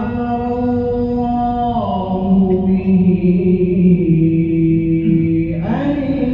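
A male reciter chanting the Quran in tarteel style. He holds long, steady melodic notes, steps down to a lower pitch about two seconds in, and starts a new phrase just before the end.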